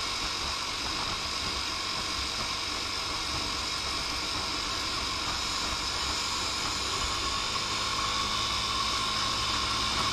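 A Lance Havana Classic 125 scooter under way: steady wind rush over the handlebar-mounted camera, with the small engine's drone underneath. It grows a little louder over the last couple of seconds.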